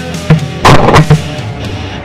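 A quick volley of shotgun blasts, four or five shots packed into about a second, starting about a third of a second in. Heavy metal music with distorted guitar runs underneath.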